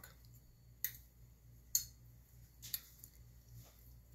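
Sharp clicks from a button-lock folding knife as its blade is worked open and shut: three distinct clicks about a second apart, the middle one loudest, with a few fainter ticks between.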